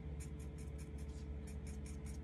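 Black Sharpie marker tip scratching on paper in quick, short strokes, about six a second, as short hairlines are drawn, with a faint steady low hum underneath.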